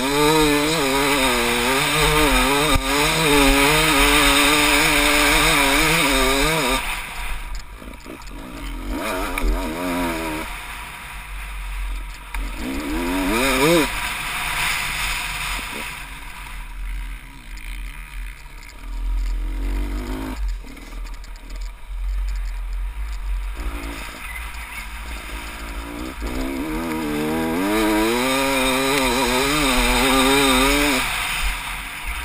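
Dirt bike engine heard from the rider, revving hard and pulling under throttle, its pitch wavering up and down. About seven seconds in the revs fall away for a long stretch, with one short climb in revs near the middle, then it pulls hard again near the end.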